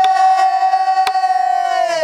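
A woman singing pansori holds one long high note that bends downward near the end, with a single stroke on the buk barrel drum about a second in.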